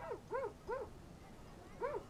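A dog giving short whimpering yelps, each rising and falling in pitch: three in quick succession at the start and another near the end.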